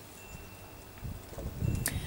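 Quiet outdoor background. About a second in, a low rumble of wind on the microphone builds up, and there is one sharp click near the end.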